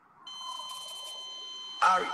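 A recorded song starts playing back with steady, high, beep-like electronic tones coming in about a quarter second in. A louder burst of the track starts near the end.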